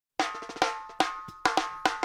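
Opening of a music track: sharp drum hits, about one every 0.4 s and starting a fraction of a second in, each ringing briefly and fading.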